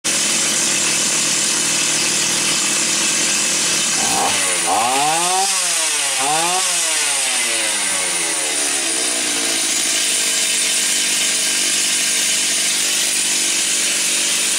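Stihl 028 AV Super two-stroke chainsaw engine idling, revved up and let back down twice about four to seven seconds in, then settling back to a low, steady idle. The idle is set as low as it will still run properly, which the mechanic takes as proof that the saw does not have low compression.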